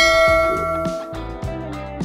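A bright, many-toned bell chime sound effect, the kind that goes with a subscribe banner's notification-bell animation, rings out and fades over about a second and a half. Background music plays underneath.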